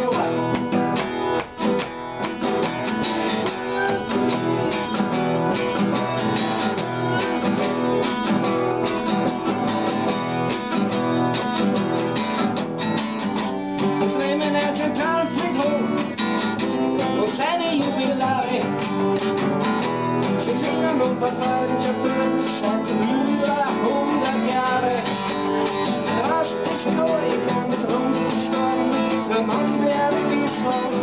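A man singing while strumming chords on a steel-string Ibanez acoustic guitar, steady throughout.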